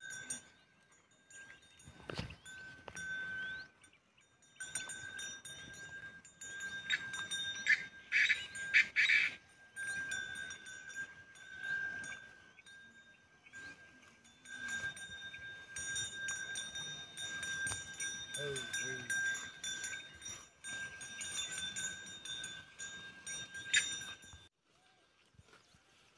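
Bells ringing steadily as cattle graze, cutting off suddenly near the end.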